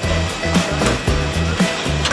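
Background music with a steady beat and bass line, over a steady rushing noise.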